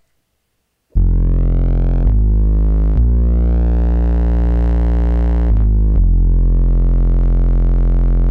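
Synth bass line from a Dave Smith Tempest analog drum machine, played through an Elysia Karacter saturation and distortion unit that is switched on: low, sustained notes thickened with added harmonics. Five held notes begin about a second in, the longest in the middle.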